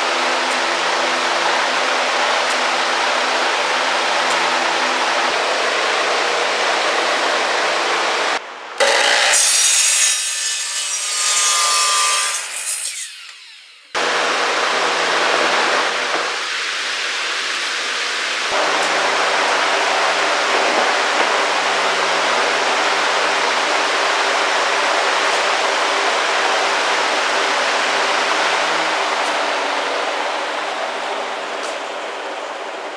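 A power saw cutting 2x6 pine tongue-and-groove decking boards, running steadily through the wood. About a third of the way in the sound changes abruptly to a brighter, louder stretch of a few seconds, then the steady cutting resumes.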